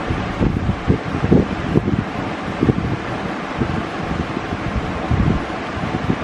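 Steady rushing air noise with irregular low buffeting on the microphone.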